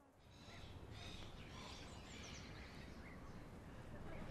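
Faint outdoor background noise with a few distant bird chirps, short and high-pitched, mostly in the first two seconds and again near the end.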